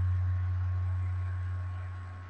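Steady low electrical mains hum with a faint hiss from the recording chain, easing off slightly toward the end.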